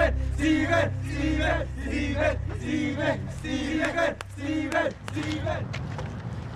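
A group of boys chanting "Steven!" over and over in a quick, even rhythm, about two shouts a second, with music underneath that drops away about halfway through.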